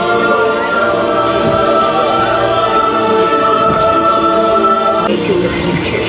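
Ride soundtrack music with a choir holding a long sustained chord. The chord changes a little after five seconds in.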